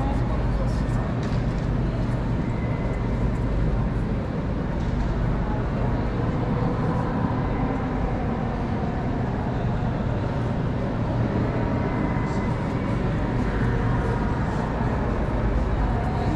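Busy city street: a steady rumble of road traffic and vehicles, with people's voices mixed in.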